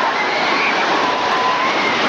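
Small waves breaking and surf washing through the shallows: a steady, loud rush of water.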